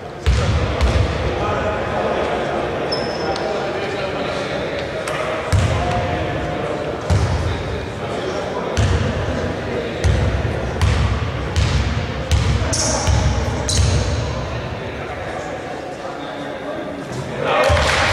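Basketball being bounced on an indoor court floor: a run of repeated low thuds from about a third of the way in, as the shooter dribbles at the free-throw line, heard in a large gym.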